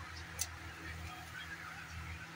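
Water simmering in a steel wok over a gas burner, with a steady low hum and scattered small bubbling pops. There is one sharp click about half a second in.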